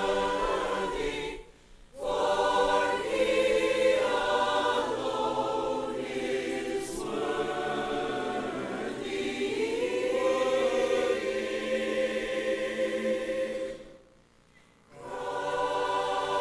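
Large mixed church choir singing a hymn in sustained chords, a cappella, cutting off together into two short pauses, about two seconds in and near the end.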